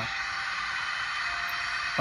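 Recorded Boeing 747-400 jet engines in reverse thrust, a steady rushing noise, played through a smartphone's small loudspeaker.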